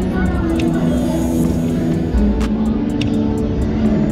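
Slot-machine electronic tones and jingles fill the casino floor, several held notes layered over each other, with scattered sharp clicks while a three-reel slot machine spins.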